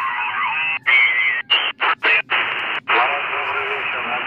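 Lower-sideband voice and hiss from the 40 m amateur band, coming thinly through the speaker of a Radtel RT-950 Pro handheld receiver. The audio cuts out briefly about six times in the first three seconds as the receiver is stepped up in frequency.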